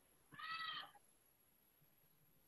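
A single short, high-pitched animal call about half a second long, rising and then falling slightly in pitch, faint in an otherwise near-silent room.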